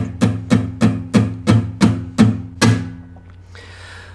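Acoustic guitar (a Baton Rouge AR81C/ACE) strummed in a steady rhythm of about four strokes a second. The chords ring between strokes, the strumming slows a little and stops about three seconds in.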